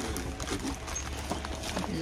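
Scattered light knocks and taps of small items and packaging being handled, over a steady low hum.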